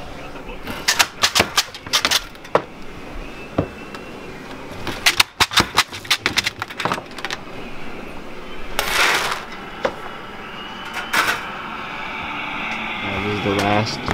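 Pieces of hard candy clattering: groups of sharp clicks, then a short rushing clatter about nine seconds in as cut candies slide off a wire screen onto the table.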